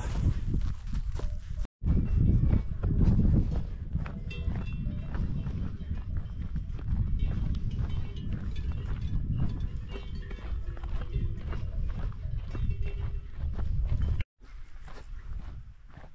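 Cowbells on grazing cattle clanking lightly, over a steady low rumble of wind on the microphone.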